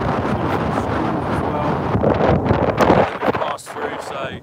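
Strong wind buffeting the microphone: a loud, rough, steady rush that eases about three seconds in.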